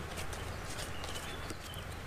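A paper greeting card being handled: light, irregular clicks and rustles as it is picked up and opened, over a steady outdoor hiss and low hum.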